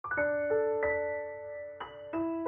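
A piano intro starting out of silence: a handful of notes and chords struck in a slow, gentle phrase, each left to ring on.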